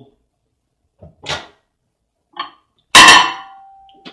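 Over-the-range microwave oven door opened. A sharp, loud latch clack is followed by a short metallic ring that fades over about a second, after a couple of softer handling sounds.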